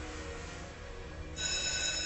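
A bell starts ringing steadily about one and a half seconds in, a sustained ring of several high tones held at one level; it is a classroom bell.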